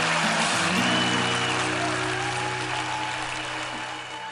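Audience applauding, with background music holding long low notes underneath. The applause slowly fades toward the end.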